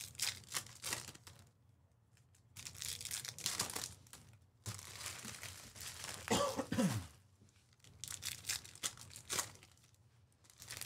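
Foil trading-card pack wrappers crinkling and tearing as packs are ripped open, in four bursts. About two-thirds through, a short voice sound falling in pitch stands out over the crinkling.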